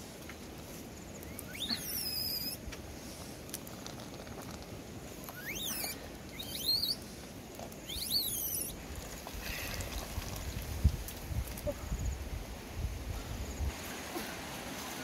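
Animal calls: four short calls, each sweeping quickly up in pitch, over a steady background hiss, followed by several low rumbling thumps in the last few seconds.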